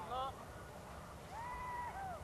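A single drawn-out call that rises, holds and falls back, about a second and a half in, over faint steady background noise. A word is spoken at the very start.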